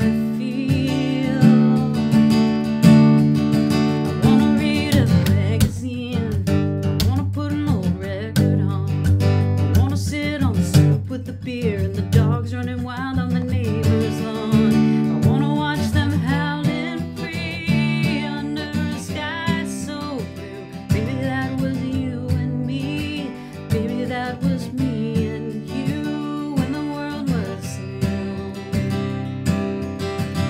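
Acoustic guitar strummed, with a solo voice singing over it.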